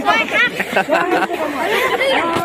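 Overlapping chatter of several voices talking and calling out at once, many of them high-pitched children's voices.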